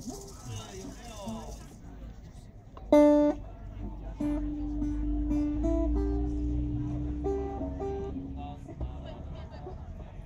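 Acoustic guitars start a slow song introduction. A loud note sounds about three seconds in, followed by a gentle melody of long held notes that change pitch.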